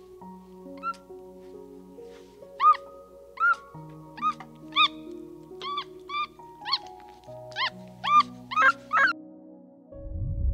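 Macaque giving about a dozen short, high squeaky calls, each rising and falling in pitch, over soft background music of held notes.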